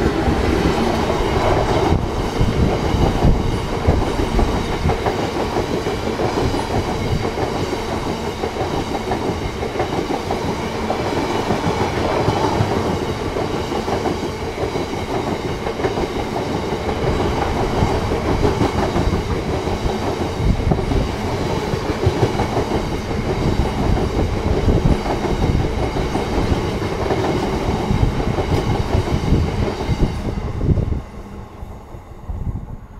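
A freight train passing at close range: a Class 66 diesel locomotive going by at the start, then a long rake of biomass hopper wagons rolling past, their wheels rattling over the rails.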